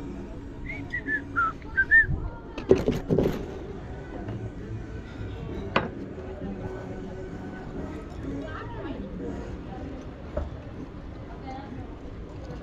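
Table-side eating sounds over a low murmur of voices: a few short falling whistled chirps early, then a loud cluster of knocks and clatter on the table about three seconds in, and a single sharp clink of cutlery on the plate near the middle.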